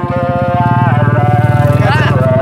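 A man's voice over an outdoor public-address loudspeaker, drawing out a long held syllable that bends in pitch near the start and the end.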